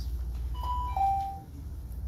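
Two-note electronic chime, a higher note followed by a lower one like a doorbell ding-dong, sounding once about half a second in over a low steady room hum. It marks the end of the speaker's allotted time at the podium.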